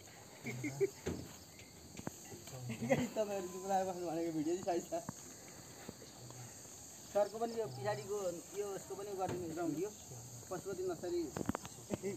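A steady, high-pitched insect chorus, like crickets, runs throughout, while people's voices talk in two stretches, about three seconds in and again from about seven seconds.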